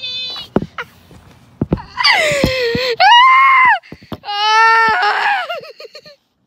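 A girl screaming: a short squeal, then three long, loud, high-pitched screams from about two seconds in, each falling in pitch at its end, with a few sharp knocks between them.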